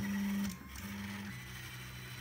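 A click, then the stepper motors of a delta 3D printer whining as a print starts: two short moves of about half a second each, then a steadier, lower tone. The motors are driven by an Arduino Due through a hacked RAMPS 1.4 board.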